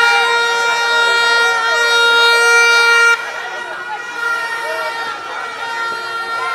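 A horn sounds one long steady blast of about three seconds and cuts off suddenly, over the chatter and shouting of a street crowd. Fainter horn tones come back near the end.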